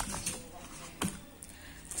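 Handling noise as a catfish is taken up off a dissecting tray by hand: a soft knock at the start and another sharp click about a second in.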